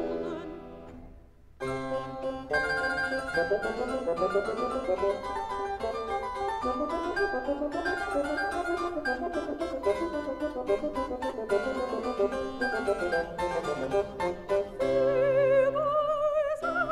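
Mono 1950s LP recording of a Baroque chamber orchestra with solo voice. A sung phrase fades to a brief lull about a second in, then a lively instrumental passage of quick, busy notes plays, and a solo voice comes back in near the end.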